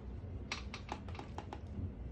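A quick run of about seven light taps or clicks, starting about half a second in and over within about a second.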